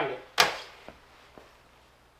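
A single sharp knock about half a second in that dies away quickly, followed by two much fainter ticks.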